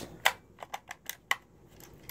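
Handling noise: about half a dozen light clicks and knocks spread over two seconds as the recording phone is moved around against a blanket.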